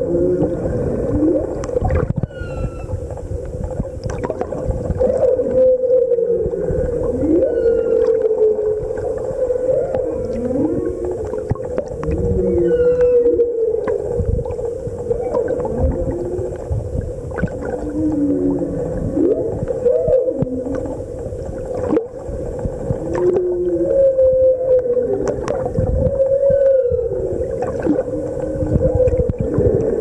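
Humpback whale song heard underwater: a long series of low calls, each rising or falling in pitch, repeating one after another over a steady hum. Fainter short high chirps and scattered clicks come in a few times.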